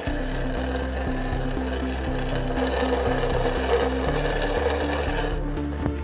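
Background music with held notes, over a steady hiss of tap water running onto a tile in a utility sink, brightest in the middle of the stretch.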